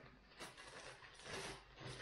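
Faint rustling and soft handling noises of paper comic magazines being shuffled on a desk, with a light click about half a second in.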